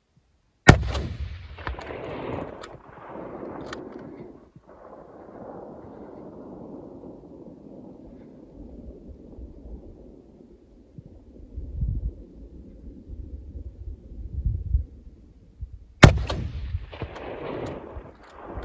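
Two hunting-rifle shots about fifteen seconds apart, each a single sharp crack followed by a long echo that dies away slowly over several seconds.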